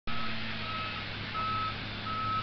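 Tigercat LS855C tracked shovel logger's engine running steadily, with its warning alarm beeping three times at an even pace.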